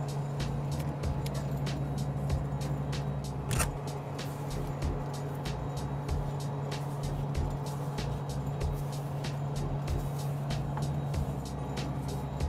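Steady hum of the International Space Station's cabin fans and life-support machinery, with frequent small clicks scattered over it.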